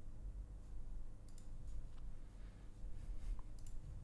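A few faint computer mouse clicks, scattered singly and in pairs, over a low steady electrical hum.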